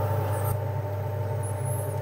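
Steady low hum from running lab equipment, with a faint hiss above it.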